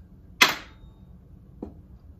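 A sharp snap about half a second in, then a much fainter click near the end.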